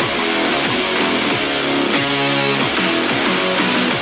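Instrumental background music led by guitar, with chords changing at a steady pace.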